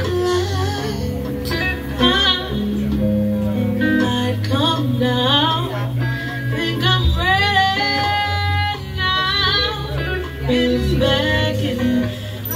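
A live band playing, with a flute carrying the melody in sliding phrases and a held note over bass and drums.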